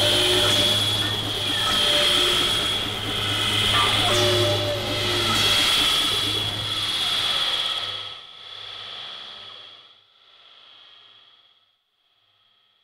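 Experimental synthesizer drone: a steady high tone over a low hum, with short pitched figures and swells in loudness recurring about every two seconds. From about eight seconds in it fades away in echoing, dying swells, nearly silent by the end.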